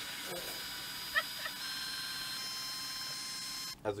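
Cordless drill running steadily, spinning a spool to wind fishing line onto it: a high motor whine that shifts pitch slightly a couple of times, with a short squeak about a second in. It stops abruptly just before the end.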